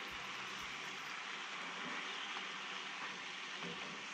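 Slices of Spam sizzling in a soy sauce and sugar glaze in a frying pan, a steady hiss, as they are turned over with a spatula and fork.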